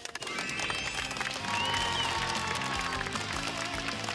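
A small group of children clapping for a teammate, over background music.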